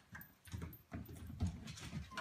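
A dog and a cat scuffling on a wooden floor: paws scrabbling and thumping in a quick run of irregular bursts.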